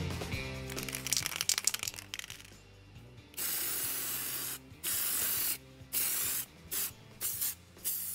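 Aerosol spray can sprayed in five short bursts of hiss starting about three seconds in, the first about a second long. Before that, rapid scratching over background music.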